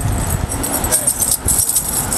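Indistinct chatter of several people talking in the background, under a low rumble on the microphone.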